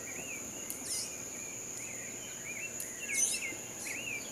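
Outdoor field ambience: an insect's steady high-pitched buzz, with a bird's short chirping calls repeating every second or so.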